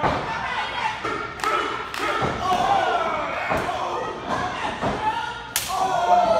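Impacts in a wrestling ring: about half a dozen sharp thuds of bodies and feet hitting the ring canvas, the sharpest near the end, with shouting voices between them.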